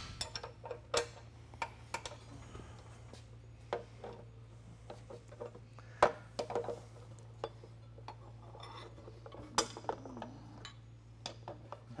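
Wrenches clinking and tapping on the steel of a planter row unit's gauge wheel arm as it is adjusted to close the gap against the seed opening disc: scattered sharp metal clinks, the loudest about six seconds in and near ten seconds, over a low steady hum.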